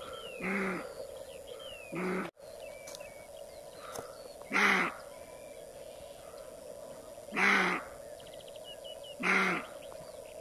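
Roe deer buck barking: five short, loud barks, one every one and a half to three seconds, with faint bird chirps between them.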